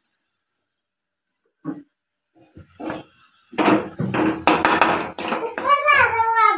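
After water is added to the chicken frying in a steel wok, loud sizzling with a steel ladle knocking and scraping against the pan starts about halfway in. Near the end a child's whining voice comes in.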